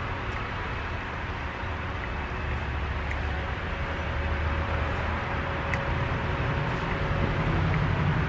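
Steady low rumble of distant road traffic, growing a little louder toward the end, with a few faint clicks.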